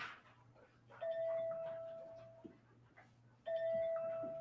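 A bell-like chime tone sounds twice, about two and a half seconds apart. Each starts sharply and fades over about a second and a half.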